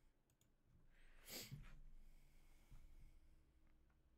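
A short breathy laugh, mostly exhaled air, about a second in, with a few faint computer-mouse clicks around it.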